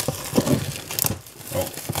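Plastic shrink-wrap on a cardboard model-kit box crinkling and tearing as it is cut and peeled off, in irregular sharp crackles.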